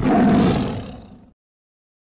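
A loud roar sound effect that starts suddenly and fades out over about a second.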